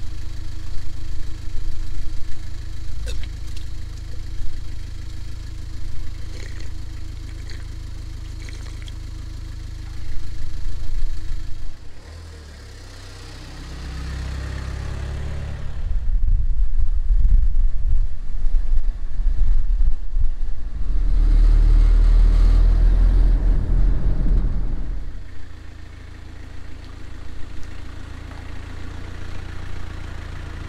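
Small van's engine running steadily at idle, then louder engine and road noise with a heavy low rumble for about ten seconds from roughly halfway as the van is driven, falling back to a steady engine hum near the end.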